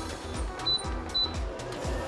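Background music with a steady beat, over which come two short high beeps about half a second apart: key beeps from a Risograph stencil printer's control panel as its buttons are pressed.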